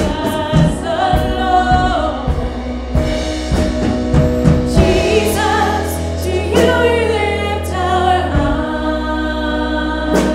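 A live worship band playing a song: women's voices singing held melody lines over a drum kit and a steady bass.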